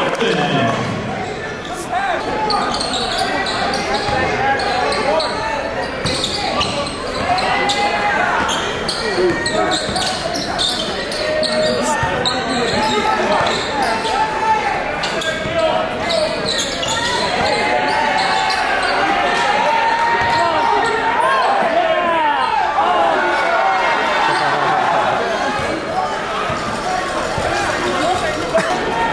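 Gymnasium crowd chatter and shouts from many voices during basketball play, with a basketball bouncing on the hardwood floor.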